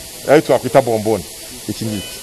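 A man speaking in short bursts, with a steady hiss underneath from oxygen flowing through a cylinder regulator and humidifier.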